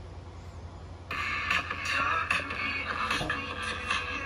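Music starts about a second in, played through a vintage Optonica SA-5206 stereo receiver into a single speaker, over a steady low hum. It sounds thin, with little bass. It is not loud even with the volume all the way up, from a faulty receiver on which only one channel works.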